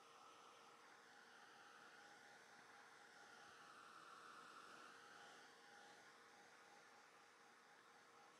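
Near silence: the faint, steady whir of a Ranger Heat It craft heat tool blowing hot air to dry wet watercolour paper, swelling slightly midway.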